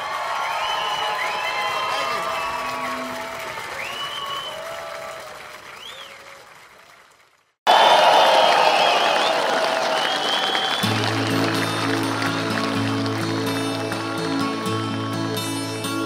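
Live concert audio: cheering and applause over music, fading out to silence a little past halfway. A new live track then starts abruptly with audience noise and an instrumental intro, with a steady bass line entering a few seconds later.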